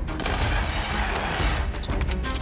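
Film trailer sound mix: a dense rushing hiss over a deep, steady rumble, with a few sharp hits, easing off near the end.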